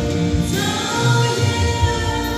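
Gospel song: a woman's singing voice through a hand microphone over sustained musical accompaniment, the voice coming in about half a second in.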